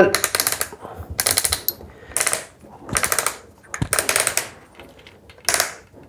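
Magazine cap of a Hatsan Escort semi-automatic shotgun being screwed down the magazine tube by hand, its detent ratcheting in short bursts of rapid clicks about once a second.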